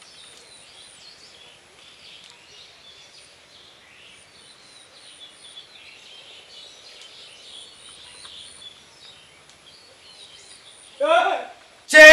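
Small birds chirping faintly over quiet outdoor background noise; about a second before the end, a voice calls out loudly and briefly.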